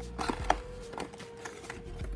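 Cardboard trading-card hobby box being opened by hand: a few short scrapes and taps of cardboard as the lid is worked loose and lifted, the sharpest about half a second in, over a faint steady tone.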